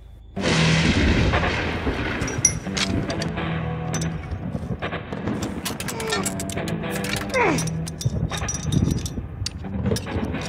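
Horror-film soundtrack: a sudden loud hit about half a second in, then dark music and sound effects full of sharp clicks, with a falling screech shortly before the end.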